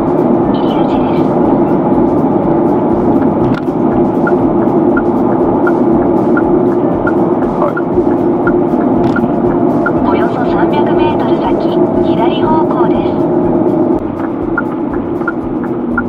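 Steady car-cabin road and engine noise while driving, mixed with music that carries a regular ticking beat; the sound drops slightly near the end.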